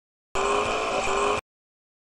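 A car engine accelerating for about a second, its pitch rising, dropping back about halfway through and rising again, then cut off abruptly.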